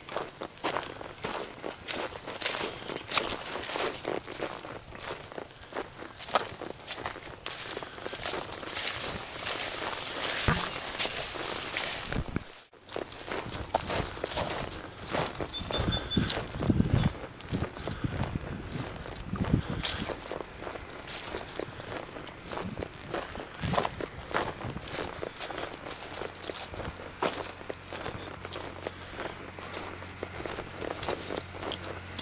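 Footsteps of someone walking through long grass and over turf, an uneven run of soft crunching steps with some brushing of the stems. A low steady hum comes in near the end.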